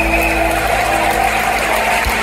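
Loud live rock-concert sound in a theatre as a song winds down: a steady wash of crowd and band noise with a faint held high tone.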